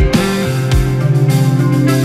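Metal band playing an instrumental passage with no vocals: sustained guitar chords over bass and drum kit, with a fast even pulse in the second half.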